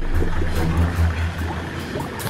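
A low, steady rumble with faint voices over it.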